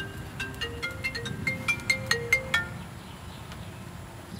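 Mobile phone ringing with a melodic ringtone: a quick run of short notes that stops after about two and a half seconds, when the call is picked up.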